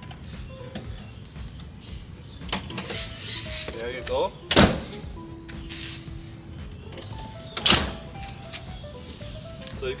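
Peugeot 5008's removable third-row seat being set back into its floor mounts: two loud clunks, about halfway through and again about three seconds later, as it is positioned and latches, with smaller clicks and rattles between.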